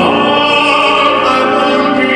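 A man singing a long held note in an operatic style, accompanied by a grand piano.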